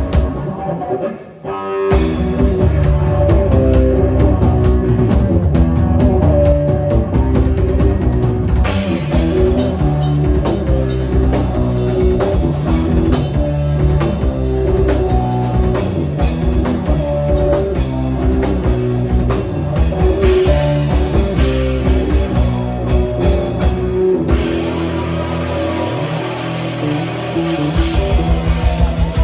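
Rock band playing live: bass guitar, electric guitar and drum kit. The band stops for a moment about a second in, then comes back in full, and near the end the drums drop out, leaving held guitar and bass.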